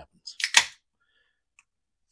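A beer can's pull tab opened: a quick crack and short hiss about half a second in, then a faint click near the end.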